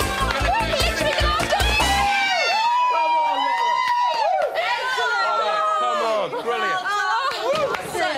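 Excited voices shouting over background music with a heavy beat. The music's bass beat stops about two seconds in, leaving the shouting voices with lighter music behind them.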